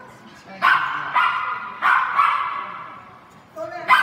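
A small dog barking excitedly, about five sharp barks, each echoing in a large hall.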